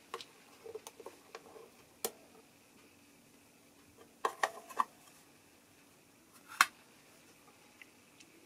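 Scattered small clicks and taps of a plastic control-cavity cover being unscrewed and lifted off the back of an electric guitar. There is a quick cluster of clicks about halfway through and one sharper click about two thirds of the way in.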